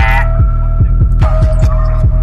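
Hip-hop beat instrumental: deep 808 bass hits, each sliding down in pitch, about four a second, under a steady held synth note.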